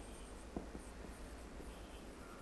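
Marker pen writing on a whiteboard: faint scratching strokes as a word is written.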